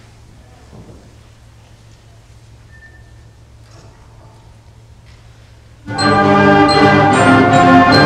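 A quiet hall with a steady low hum and faint small rustles, then, about six seconds in, a middle-school concert band enters loudly all at once: brass and woodwinds on sustained chords with ringing percussion accents, the opening of a piece.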